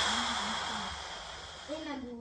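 A sudden loud hissing rush with a thin high whistle in it, fading away over about two seconds, under a short laugh and voices.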